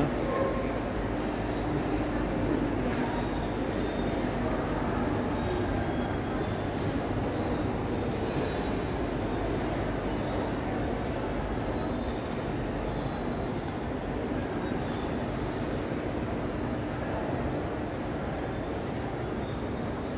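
Steady background din of a large indoor hall with a faint continuous hum, with no distinct events.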